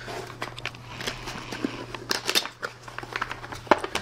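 A cardboard retail box handled and its flap worked open: scattered light clicks, taps and scrapes of paperboard, over a steady low hum.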